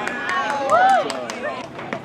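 Several voices shouting at once across a baseball field, with a couple of drawn-out calls that rise and fall in pitch, loudest just before the middle, and a few short sharp clicks among them.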